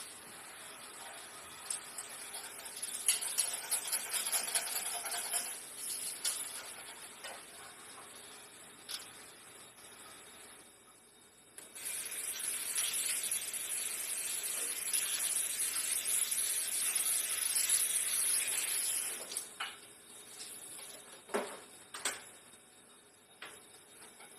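Kitchen handling sounds as cut kiwi is put into a plastic blender jar: a few short sharp knocks near the end, between stretches of steady hiss.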